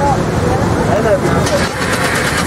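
Street traffic with a vehicle engine running and a steady low road rumble, with people's voices talking over it.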